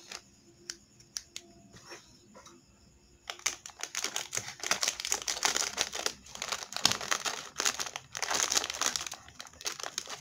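Plastic snack packet crinkling as hands handle and rub across it: a few light crackles at first, then from about three seconds in a dense crinkling that goes on until near the end.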